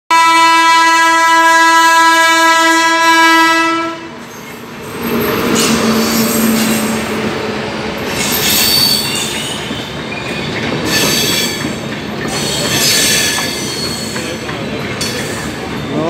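A WAP-7 electric locomotive's air horn sounds one long, steady, loud blast for about four seconds, then cuts off. The passenger train then rushes past at speed: a continuous rumble of coaches and wheels, with high-pitched waves of wheel squeal rising about every two seconds.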